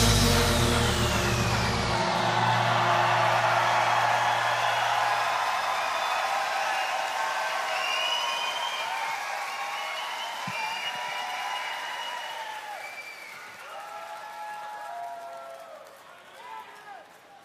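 Concert audience applauding and cheering as a pop song ends, its last held note fading out in the first few seconds. Whoops and cheers rise over the clapping about halfway through, and the applause dies down toward the end.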